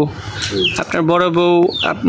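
A woman's voice speaking in long, drawn-out syllables on held pitches, the longest lasting most of a second in the middle.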